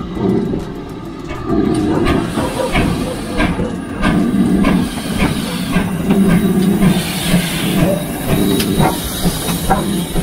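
GWR Modified Hall steam locomotive No. 6989 Wightwick Hall running slowly past at close range. Its exhaust beats in a slow rhythm of about one a second, with steam hissing and its wheels knocking over the rail joints; the hiss grows from about two seconds in.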